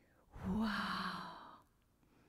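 A woman's single breathy exclamation, "Wow!", lasting about a second.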